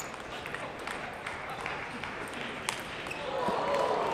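A table tennis ball struck back and forth in a rally: irregular sharp ticks of the celluloid-plastic ball on bats and table, over a murmur of spectator voices in a large hall. Near the end the voices grow louder.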